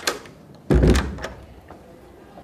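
A door being pulled shut, closing with a single heavy thud about two-thirds of a second in.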